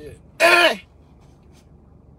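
A man's single short vocal exclamation about half a second in, falling in pitch, in a moment of amused disbelief; the rest is quiet with a low hum.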